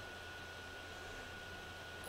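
Faint steady background hiss of a voice-call recording, with a thin steady high tone and a low hum running under it.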